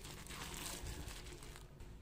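Faint crinkling of a thin plastic bag as it is handled with the steamed taro dough inside. It fades out near the end.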